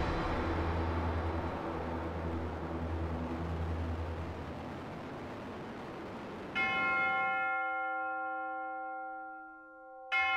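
A low tail of music fades out, then a large church bell is struck once about six and a half seconds in and rings with several steady tones, dying away over a few seconds. It is struck again right at the end.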